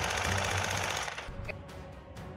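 Rapid rattle of automatic gunfire over background music, dying away a little over a second in.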